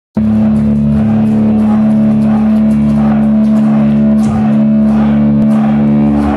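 Live death-thrash metal band playing loud: electric guitars and bass holding a sustained low note over drums with steady cymbal hits.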